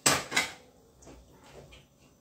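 Two sharp clicks about a third of a second apart at the very start, made while a lamp is being switched on, followed by faint room tone.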